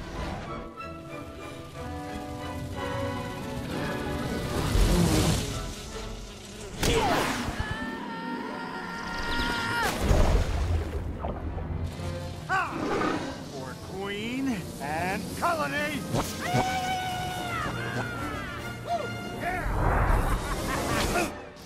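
Animated-film action soundtrack: orchestral score with several loud crashes and impacts in the first half, then a run of vocal cries and yelps in the second half.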